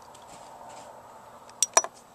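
Two sharp metallic clicks near the end, a fraction of a second apart: a spring-loaded alligator clip on a battery lead snapping shut against a car battery's side terminal, a fiddly connection that won't stay on.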